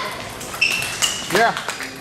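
Table tennis ball clicking sharply off paddles and the table several times during a rally, some hits with a short ringing ping. A brief squeal that rises and falls, about a second and a half in, is the loudest sound.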